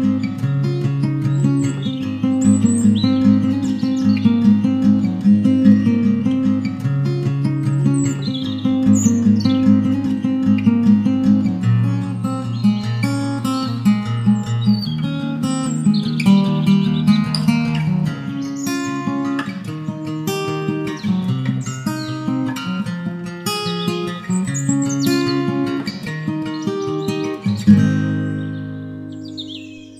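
Background music: acoustic guitar picking a melody over low sustained notes, with bird chirps mixed into the track.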